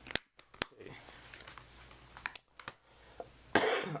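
Hard plastic Blu-ray cases being handled: a few sharp clicks and taps, a cluster in the first second and a few more around two and a half seconds in.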